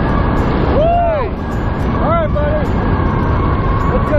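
Steady wind rushing over the microphone during a parachute canopy descent, a loud low rumble that doesn't let up, with a man's voice calling out briefly a couple of times over it.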